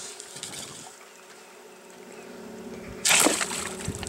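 A bowfishing arrow shot from a compound bow, hitting the water with one short, sharp splash about three seconds in; the arrow has struck a gar. A faint steady hum runs underneath.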